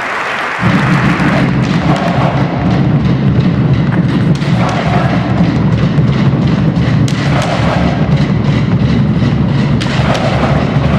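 Drumline of marching bass drums starts playing suddenly about half a second in, a dense steady pounding. Applause fades out under it during the first second or so.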